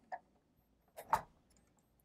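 Plastic LEGO bricks of the First Order Star Destroyer set 75190 clicking as its hinged side hull panel is swung open by hand: a faint click, then a louder double click about a second in.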